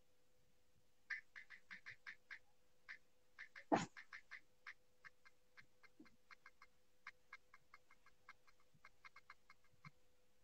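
Faint, rapid, irregular clicking, several short clicks a second, with one louder knock a little before four seconds in, over a faint steady hum.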